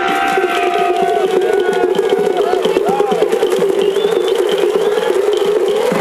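Live electronic dance music from a DJ set over a PA, in a breakdown without the kick drum: a wavering synth drone carries on, with a few short blips that glide up and down in pitch.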